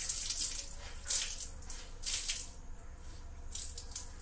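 Water running from a kitchen tap into a sink, splashing in uneven surges, the flow thinning toward the end.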